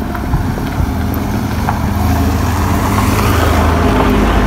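A motor vehicle's engine running close by, growing gradually louder as it approaches.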